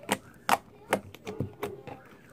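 Slime being squeezed and pressed by hand, giving a string of sharp clicks and pops, about six in two seconds.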